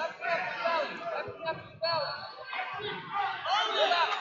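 Indistinct voices echoing in a large gym hall, with one sudden sharp sound a little under two seconds in.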